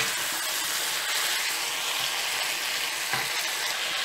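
Beef pieces, onion, tomato and yellow pepper sizzling steadily in a frying pan with soy sauce and vinegar: a stir-fry cooking over high heat.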